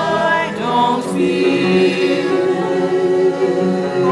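Mixed church choir of men's and women's voices singing an anthem with piano accompaniment, sustaining long chords.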